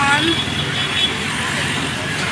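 Road traffic noise: a steady wash of passing vehicles, with a brief bit of a woman's voice at the very start.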